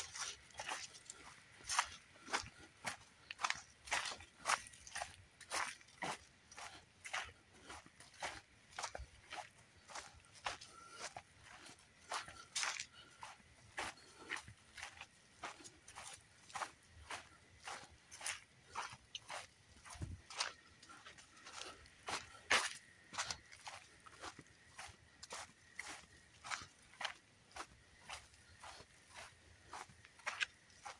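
Footsteps crunching on dry leaf litter and a dirt trail at a steady walking pace, about two steps a second.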